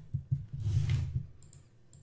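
Clicking at a computer: a few light clicks soon after the start and again near the end, with a short hiss between them.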